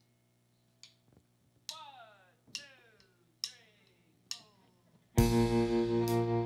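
Opening of a country song. Four evenly spaced plucked string notes, each sliding down in pitch, then the full band comes in loudly about five seconds in with acoustic guitar, bass, fiddle and pedal steel guitar.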